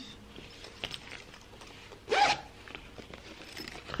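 The metal zipper of a canvas cosmetic pouch is pulled open in one quick stroke of about half a second, midway through. A few faint handling sounds of the fabric come before it.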